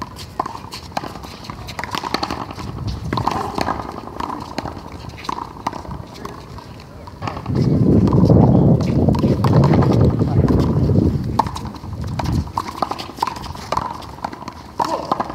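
Handball rally on an outdoor concrete court: irregular sharp slaps of the rubber ball off players' hands and the wall. A loud, low rushing noise swells up about halfway through and covers the slaps for about five seconds.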